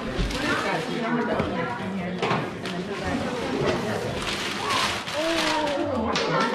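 Several people talking at once in a room, with wrapping paper rustling and tearing off a large cardboard box.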